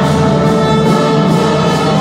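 Marching band of brass and percussion playing, the brass holding long sustained chords.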